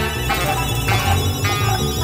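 1970s jazz ensemble recording with electric bass, electric piano, synthesizer and guitar: a steady bass line under a bright, bell-like ringing pattern that pulses about twice a second.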